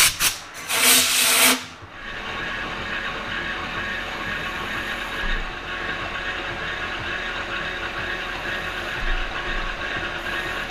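Two blasts of compressed air from a blow gun, a short one and then a longer hiss of about a second, followed by a manual metal lathe running steadily while its tool takes a light facing cut in an aluminum part.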